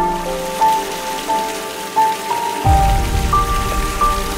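Water running and splashing over a rock water feature, a steady hiss, mixed with background music: slow held melody notes, with a deep bass note coming in about two-thirds of the way through.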